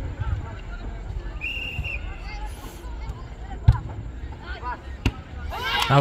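A referee's whistle blows briefly about a second and a half in. About two seconds later comes the sharp thud of a football struck for a free kick, and a second sharp knock follows about a second and a half after that. Near the end, players' voices break into loud shouting as the shot goes in.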